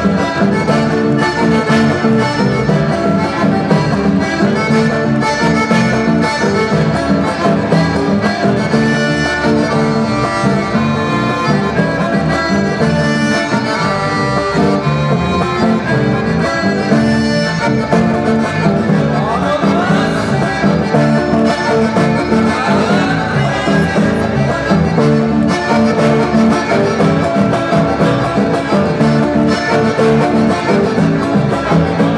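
Instrumental chamamé played live on accordion and acoustic guitars, the accordion carrying the melody over a steady guitar rhythm.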